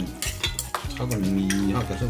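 Chopsticks clicking and scraping against brass bowls and dishes while people eat, with several sharp clicks in the first second.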